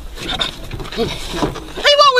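Short wavering vocal cries, the loudest one near the end.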